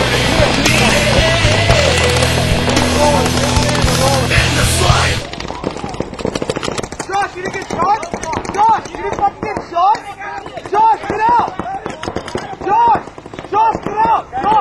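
Heavy rock music that cuts off abruptly about five seconds in. Then rapid popping of paintball markers firing in quick strings, with shouting voices.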